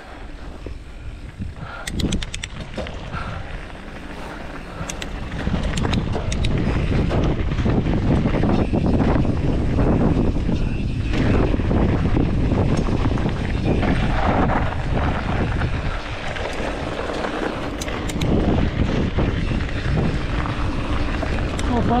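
Mountain bike riding fast down a dirt trail: wind buffeting the camera microphone and knobby tyres rolling on loose dirt, growing much louder about five seconds in as the bike gathers speed. Occasional sharp clicks and rattles from the bike come through.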